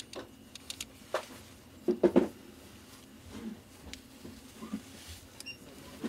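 Handling noise from a Leica Summaron 35mm f/2.8 lens turned in gloved hands: light clicks and knocks from the metal lens barrel, with a quick cluster of sharper clicks about two seconds in.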